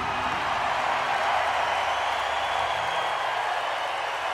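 Large concert crowd applauding and cheering as a song ends, a steady wash of clapping and voices.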